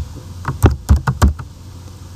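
Computer keyboard keystrokes: about five quick, sharp key presses starting about half a second in.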